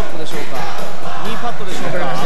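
Speech over background music.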